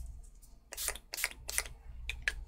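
Makeup setting spray pumped from a bottle onto the face in about four quick spritzes, each a short hiss.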